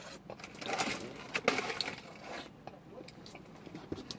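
A person eating an ice cream cone close to the microphone: a scatter of short sharp clicks and crunches from biting and chewing the cone, with a couple of brief rustles.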